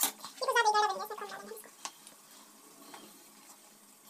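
A cat meows once, a single call of about a second that falls in pitch, just after a metal ladle clinks against a steel pan.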